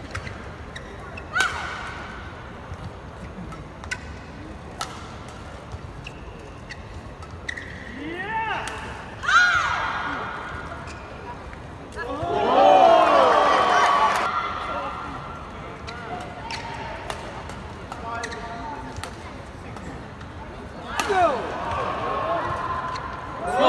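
Badminton rally: sharp racquet strikes on the shuttlecock, with shoes squeaking on the court mat. The squeaking is loudest in a long stretch a little past halfway.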